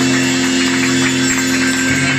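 Live band music: a chord held steady over drum kit and hand percussion.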